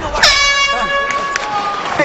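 Arena horn sounding to signal the start of an MMA round: one steady, high-pitched horn tone starting about a quarter second in and held for about a second and a half.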